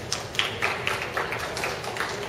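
A run of about eight sharp taps, evenly spaced at roughly four a second, over steady background noise.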